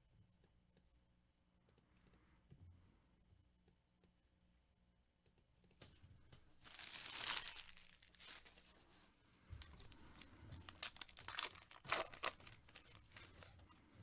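Near silence for about six seconds, then a baseball card pack's wrapper torn open with a short rushing rip about seven seconds in, followed by a run of quick crinkles and clicks as the wrapper and cards are handled.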